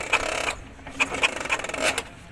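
Four-stroke scooter engine turned over on the kick-starter twice without firing, a rasping whirr each time: the spark is being tested after the ignition wiring coupler was refitted the right way round.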